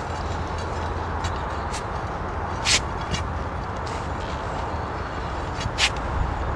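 A steel crowbar being worked point-first into wet soil: two short sharp clicks about three seconds apart, over a steady low rumble.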